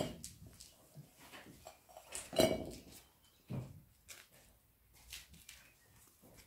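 A few short, scattered knocks and clinks: a sharp one at the start, the loudest about two and a half seconds in, and a smaller one about a second after that.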